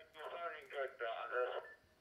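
A man's voice received over D-STAR digital radio and played from the Icom ID-52 handheld's speaker, thin and narrow-band; the transmission stops shortly before the end.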